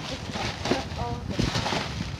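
Rummaging through trash in a metal dumpster: plastic bags rustling and crinkling, with a few sharp knocks.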